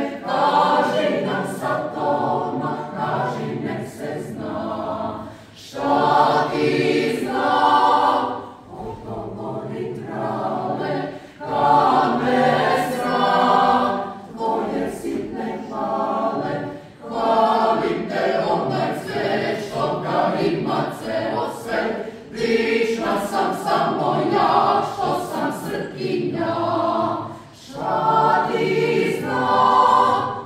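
Mixed choir of women's and men's voices singing a cappella, in phrases of a few seconds that swell louder and dip briefly between them.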